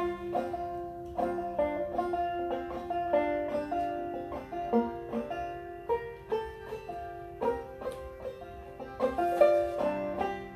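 Live acoustic duet: a banjo picking a steady run of plucked notes under a recorder playing long held melody notes.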